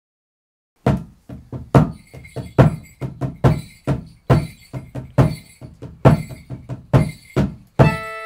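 A skin-headed drum with rope lacing, struck with a wooden beater in a steady rhythm that starts about a second in. There is a strong beat a little under once a second, with lighter strokes in between.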